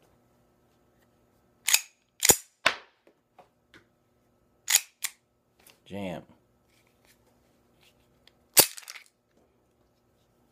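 Sharp metallic clacks of a Walther PK380 pistol being worked by hand, its slide racked and snapped forward. There are about six clacks, some in pairs a fraction of a second apart, and the loudest comes near the end.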